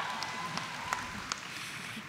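Scattered applause from a large audience, a few separate claps over a hall's background noise, fading slightly.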